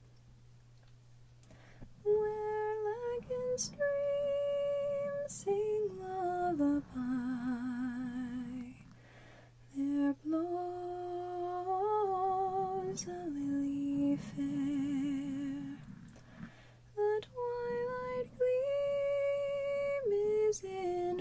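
A woman humming a slow, wordless melody close to the microphone, starting about two seconds in, with vibrato on the held notes and short pauses between phrases. A few soft clicks come from her fingers touching the foam-covered mic.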